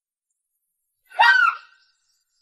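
A person's short, high-pitched vocal cry about a second in, rising and then falling in pitch.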